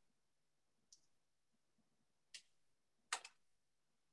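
Near silence with a few faint, short clicks: one about a second in, another past the middle, and a quick double click near the end, the loudest of them.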